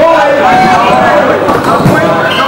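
Dodgeball players shouting and calling to each other in a large hall, with a rubber dodgeball thudding on the wooden floor in the second half.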